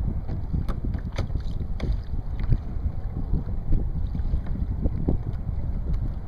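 Wind buffeting the microphone in a steady low rumble, with small waves lapping and slapping against the kayak's hull in short, sharp splashes.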